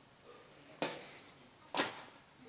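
Handling noise: two short, sharp rustles about a second apart, as papers are searched through.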